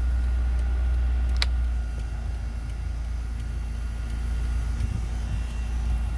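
Nissan D21's 2.0-litre four-cylinder engine idling, heard from inside the cab, with a single sharp click about a second and a half in; the low drone eases slightly just after.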